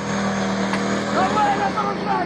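Tank engine running close by with a steady low hum as the tank moves past.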